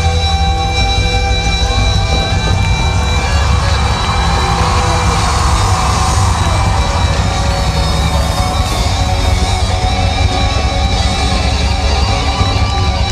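A live rock band playing loudly, with distorted electric guitars over bass and drums.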